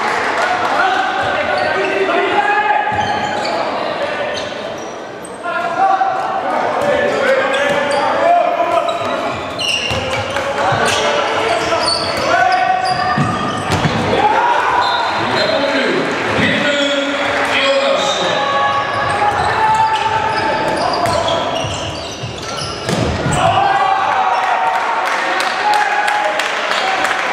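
A handball bounced on a wooden sports-hall court, with several bounces in quick succession about halfway through, under shouting voices of players and spectators that echo in the large hall.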